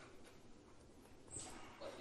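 Faint, distant speech of a student answering off-microphone, with a brief high squeak about a second and a half in.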